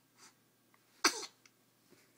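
A baby sneezing once: a single short, sharp burst about a second in, with a faint breath just before it.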